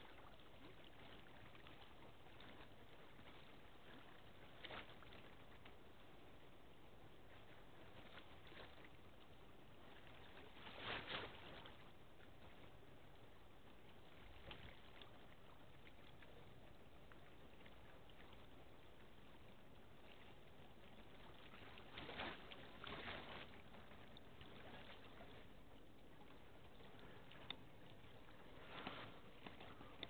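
Near silence: faint outdoor background noise with a few brief, soft swells.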